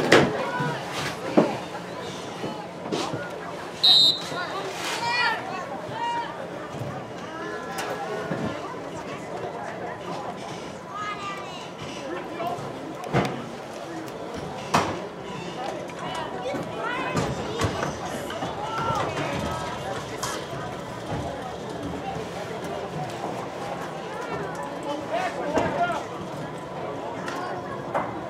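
Scattered, overlapping voices of spectators, players and coaches calling out across a football field, with no clear words, and a few sharp knocks.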